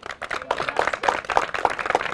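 Audience applauding: a dense, even run of many hands clapping.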